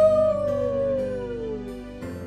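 A long coyote howl: it rises, then holds and slowly falls in pitch for nearly two seconds, fading toward the end, over soft background music.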